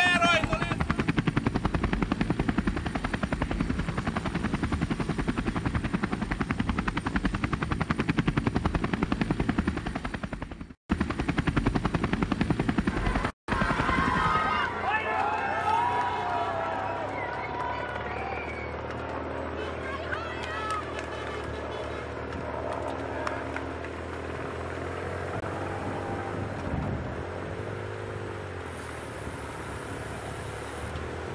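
A helicopter's rotor chopping loudly overhead for about the first ten seconds. After an abrupt cut, people along the road shout and cheer over the steady running of motor vehicle engines as the cycling peloton passes.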